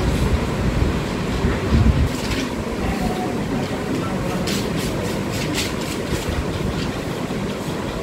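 Steady low rumble of classroom background noise, with a quick run of light clicks about halfway through as the laptop is worked, keyboard or mouse.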